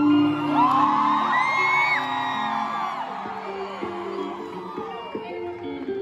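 Live band playing held notes, with a crowd whooping and cheering over the music for the first three seconds or so. After that the cheers die away and the music carries on more quietly.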